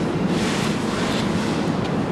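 Steady rushing background noise of a large hardware store's sales floor, with rustle from the handheld camera moving.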